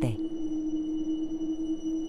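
Ambient soundtrack drone: one steady held low tone with faint thin high tones above it, unchanging throughout.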